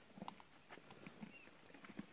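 Faint, irregular hoofbeats of a saddled horse walking on a dirt trail: a few soft thuds and light clicks.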